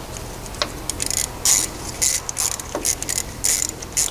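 Ratchet wrench clicking in short runs of strokes as exhaust manifold nuts are snugged onto their studs.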